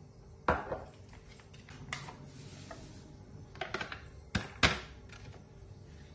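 Kitchen handling sounds: a few sharp clicks and knocks, the loudest about half a second in and a close pair about four and a half seconds in.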